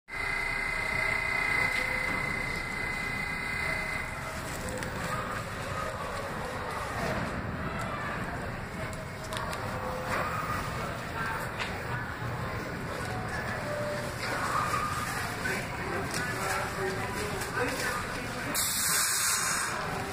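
Subway station ambience around an R68 train standing at the platform: a steady hum and rumble with voices talking in the background, and a short burst of hiss near the end.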